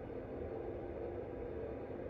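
A steady, faint background hum with a few low, unchanging tones beneath it.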